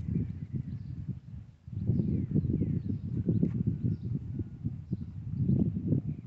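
Wind buffeting a phone microphone outdoors, a gusty, irregular low rumble that eases briefly about a second and a half in. Faint bird chirps sound above it.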